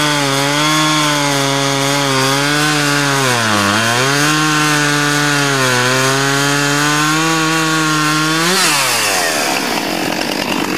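Gas chainsaw cutting through a log, its engine running at high speed under load, with a brief dip in pitch a little before halfway. Near the end it revs up briefly as the cut finishes, then its pitch falls quickly as the throttle comes off.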